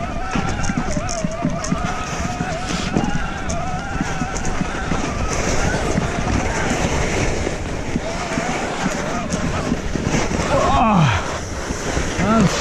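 Electric mountain bike's motor whining under pedalling, its pitch wavering, over the steady noise of tyres running on wet snow and wind on the microphone. The whine is clearest in the first half, and a little before the end a sound falls steeply in pitch.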